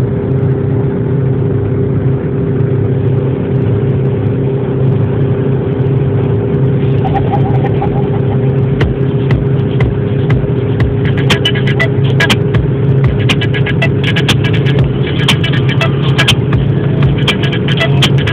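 Steady cabin drone of an Audi A3 Sportback cruising at about 200 km/h on cruise control, engine and road noise holding an even pitch. Music plays over it, and a scatter of sharp clicks comes in the second half.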